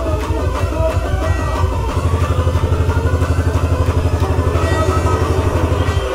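Club dance music from a DJ set on the sound system: about two seconds in, the bass turns into a fast, even stutter of around a dozen pulses a second, with a rising sweep above it, building until the bass cuts out right at the end.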